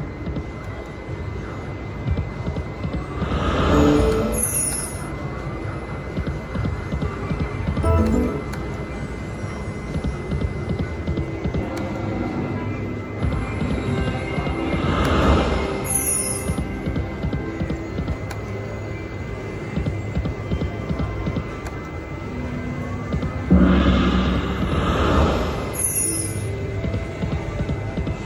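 Empresses vs. Emperors video slot machine playing its electronic game music and spin sound effects through spin after spin, with louder swells about four, fifteen and twenty-four seconds in.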